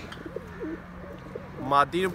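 Domestic pigeon cooing close by: a run of soft, low, wavering coos.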